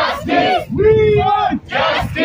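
Crowd of protesters shouting a slogan in rhythmic unison, "We want justice!", with one loud voice leading.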